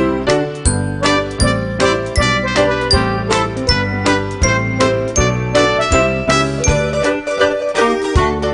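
Upbeat children's background music: short struck notes over a bass line, on a steady beat of about two to three notes a second.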